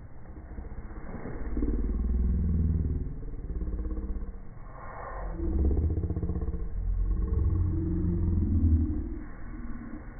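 Outdoor ambient sound slowed down along with slow-motion video, heard as a deep, drawn-out rumble with slowly gliding low tones. It swells twice, and there is a brief brighter smear about five seconds in.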